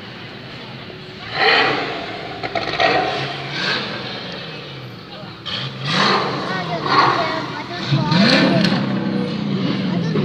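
Sports car engines revving and accelerating as cars pull away, in several loud bursts of rising and falling pitch, with people talking nearby.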